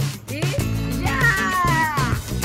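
A toddler crying out in one long wail that falls in pitch, starting about a second in, just after being dunked underwater in a pool. Music plays underneath.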